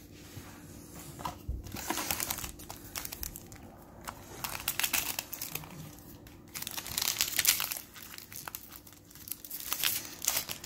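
Foil Yu-Gi-Oh booster pack wrapper crinkling and tearing as it is opened by hand, on and off in about four spells.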